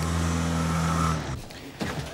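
Car engine heard from inside the cabin, picking up revs as the car moves off and then holding a steady hum, which fades out about a second and a half in. A brief click near the end.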